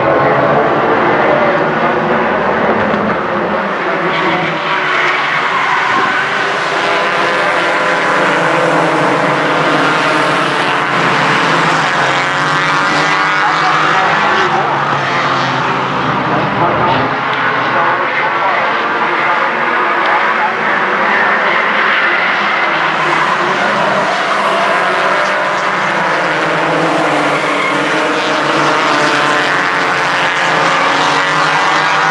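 A pack of four-cylinder Four Fun stock cars racing on a short oval track, several engines overlapping and rising and falling in pitch as the cars accelerate, lift and pass by.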